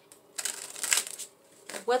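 Tarot deck being shuffled by hand: a short papery riffle of about a second. A woman's voice starts just at the end.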